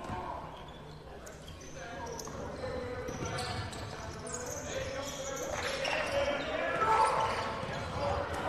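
A basketball being dribbled on a hardwood court in a large, echoing gym, with players' voices calling out on the court and a few high sneaker squeaks. The sound grows louder as the play goes on.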